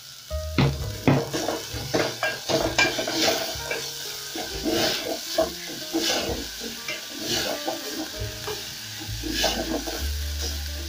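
Wooden spatula stirring and scraping onions and coriander stems frying in oil in an aluminium pot, over a steady sizzle. The stirring starts about half a second in and goes on in quick, irregular strokes.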